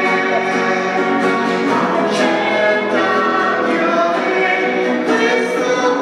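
Church choir singing a hymn in long, held notes, the offertory hymn of the Mass.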